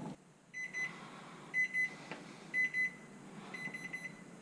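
A microwave's kitchen timer beeping at the end of a five-minute countdown: four pairs of short, high electronic beeps, about one pair a second, stopping when the keypad is pressed.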